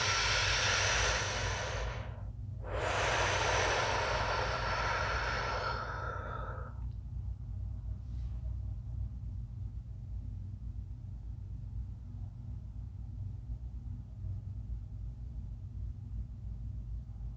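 A woman taking deep, audible breaths during a breathwork exercise. The first breath lasts about two seconds; after a short pause comes a longer one of about four seconds that fades out. After that only a low steady hum remains.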